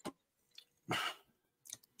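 A short breathy hiss of air about a second in, with a faint click at the start.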